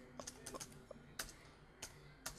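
Faint typing on a computer keyboard: a handful of irregular, separate keystrokes.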